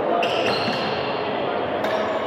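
Echoing din of an indoor badminton hall: a steady murmur of indistinct voices with a couple of sharp hits, one early on and one near the end.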